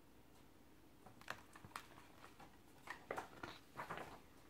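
Pages of a picture book being turned and handled: a string of faint paper rustles and small clicks starting about a second in.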